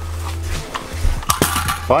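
A few sharp metallic clicks and clacks from handling an AR-style carbine just after it has been fired empty, clustered in the second half, over a steady low hum.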